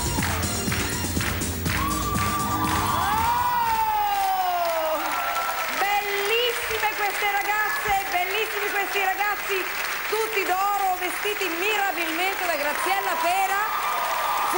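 Upbeat pop dance music with a steady beat, ending in a long falling glide about four seconds in. A studio audience then applauds, with a voice over the clapping.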